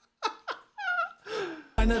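A man's laughter trailing off in a couple of short falling breaths and a high, wavering squeak of a note. A German rap song cuts in suddenly near the end.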